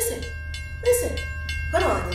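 Train sound effect: a steady low rumble with a faint held tone above it, and short hissing bursts about once a second.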